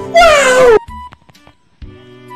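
A loud, high cry from a meme clip edited over the footage, falling in pitch and lasting about half a second, with background music that carries on quietly after it.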